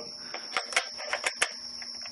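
A quick run of about half a dozen light clicks and taps as a Nikkor 50mm f/2 lens is handled against the bayonet mount of a Nikon EM camera body, metal and plastic knocking together.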